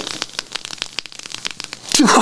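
Freshly made kkultarae (Korean dragon's beard candy), fine threads of hardened honey and malt syrup, crackling and crunching as a mouthful is bitten and chewed close to a microphone: a dense, irregular run of small crackles.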